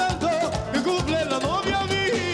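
A live merengue band playing with a steady driving beat: drums and percussion under horns and voices.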